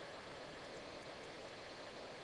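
Faint steady hiss of a recording noise floor, room tone with no distinct events.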